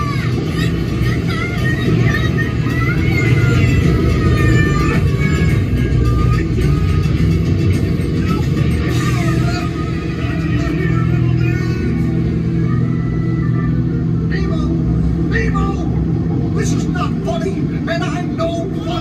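Steady low rumble inside a moving ride submarine cabin, with music and people's voices over it.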